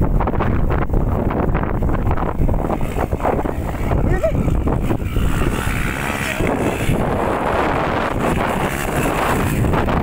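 Dirt bike engine revving as the bike climbs a steep slope, getting louder through the second half as it nears, with wind buffeting the microphone throughout.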